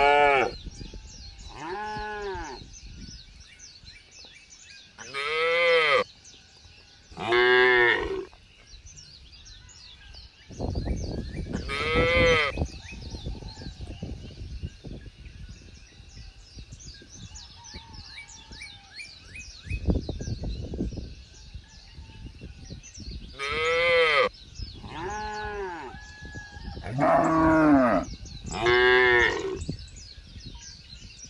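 Cattle mooing: a run of short calls, each about a second long and rising then falling in pitch. They come in two bunches, one near the start and one near the end, with a quieter stretch between. Faint bird chirping continues in the background.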